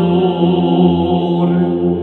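A man's solo voice singing Orthodox Byzantine chant in the third tone, holding a long sustained note over a low steady drone.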